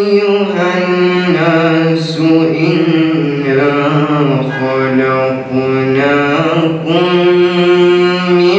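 A young male voice chanting Quran recitation in Arabic, solo, in long held melodic phrases whose pitch glides slowly up and down.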